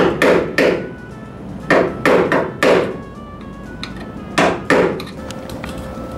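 Hammer blows driving a screw extractor into a snapped bolt: nine sharp knocks in three quick groups, three, then four, then two.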